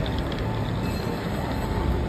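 Steady, dense rumbling background noise with a faint steady whine that comes in about a second in.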